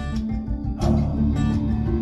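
Guitar music with plucked notes over deep sustained bass, played back through a pair of Monitor Audio Silver 300 floor-standing speakers driven by a Denon PMA-1055R amplifier and heard in the room.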